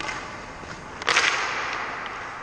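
Hockey skate blades scraping hard across the ice close by, a sudden loud swish about a second in that fades out over the next second.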